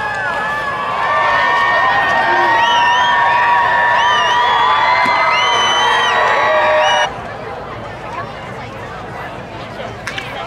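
Music over a ballpark's public-address system, with steady held notes and a melody above them, cut off suddenly about seven seconds in. Crowd chatter continues underneath.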